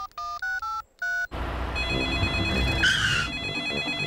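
Cartoon mobile-phone keypad tones as a number is dialled: five short two-tone beeps in the first second. Then a telephone rings with a steady high electronic tone over a low rumble.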